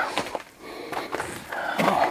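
Scrambling up a slope of loose rock: scattered scuffs and small knocks of feet and hands on stone, with clothing brushing close to the microphone.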